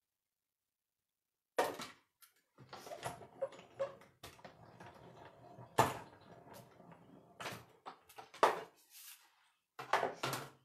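Off-camera knocks and clatter of objects being handled, with rough scraping and rattling between them. There are sharp knocks about one and a half, six, seven and a half and eight and a half seconds in, and the first second and a half is silent.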